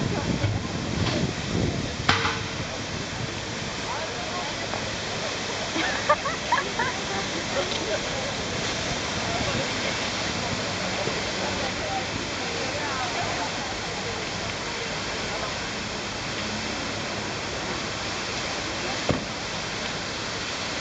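Large public fountain splashing in a steady rush of falling water, with people talking faintly in the background and a few short sharp clicks.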